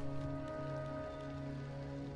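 Campfire crackling under soft background music that holds steady sustained chords.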